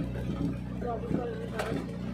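A car driving, its engine and road noise a steady low hum, with faint talking over it.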